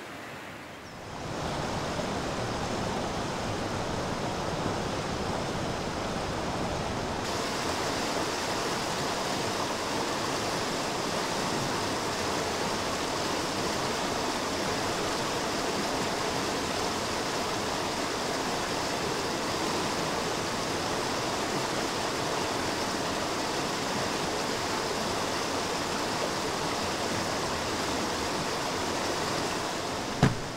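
A stream rushing steadily in a hiss-like flow. It swells up in the first couple of seconds and turns brighter about seven seconds in.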